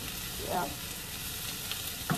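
Food frying in a pan on the stovetop: a steady sizzle.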